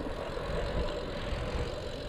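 Steady low rumble of wind on the microphone and tyre noise from a Trek Dual Sport 2 hybrid bike rolling along an asphalt street, with no distinct events.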